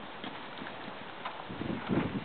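A horse's hooves thudding on soft sand arena footing at a canter around a jump, with a heavier group of hoofbeats near the end.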